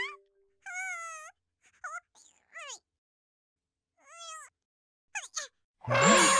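Cartoon characters making short, high, squeaky wordless calls, about five of them with pauses between. Some have a wobbling pitch and one glides down.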